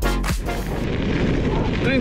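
Background music with a beat cuts off about half a second in. Loud, low wind noise buffeting an action camera's microphone follows as the cyclist rides.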